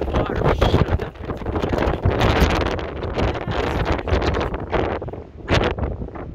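Strong wind buffeting the microphone in uneven gusts: a loud, rough rumble and hiss that surges and eases, strongest a couple of seconds in.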